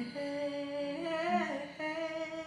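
A woman singing long, wordless held notes, the first wavering with vibrato before she steps to a new note near the end, over a strummed acoustic guitar.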